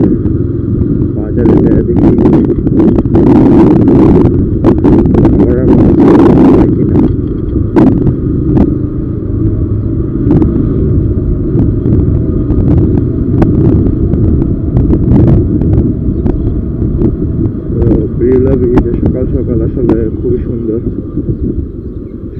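Motorcycle ride with heavy, uneven wind rumble on an action camera's microphone over the running engine of a TVS Apache RTR 160, with scattered short clicks and gusts.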